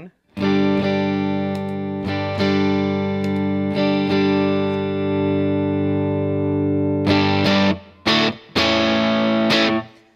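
Music Man electric guitar played through a Wampler Tumnus overdrive pedal into an AC-style amp: a chord struck and left ringing for about seven seconds, then two shorter chords near the end. The Tumnus has its gain all the way off and works as a clean level boost, pushing the amp into slight drive.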